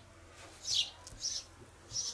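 A bird chirping outdoors: three short, high-pitched chirps, each falling in pitch, a little over half a second apart.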